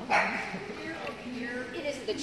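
A dog barks once, sharply, just after the start, with quieter pitched vocal sounds after it.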